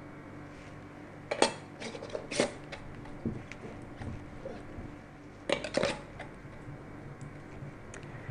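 Metal canning lids and screw bands clinking against glass bowls and mason jars while jars are lidded and bands screwed on. There is a sharp clink about a second and a half in, another a second later, and a quick cluster of clinks a little past the middle.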